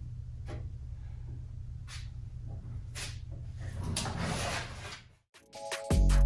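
A filler spreader scraping fiberglass-strand body filler onto a truck fender in several short strokes, the last one longer, over a steady low hum. Near the end the sound cuts out and electronic music begins.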